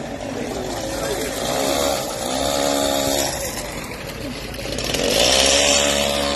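A small engine revving up twice, each rise in pitch held for a second or more before dropping back.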